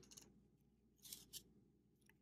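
Near silence with a few faint, brief clicks and scrapes, about a second in, of a small plastic vial and its cap being handled on a tabletop.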